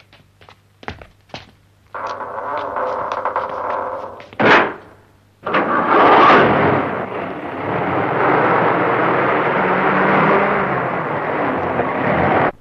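A few light thuds, then about three seconds of steady music-like tones ending in a short loud swell. From about five and a half seconds in, a heavy cab-over cargo truck runs with a loud, dense engine and road rumble.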